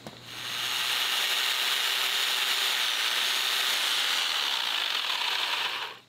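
Electric hammer drill boring into a concrete step with a steady rattling whine, starting about half a second in and stopping just before the end.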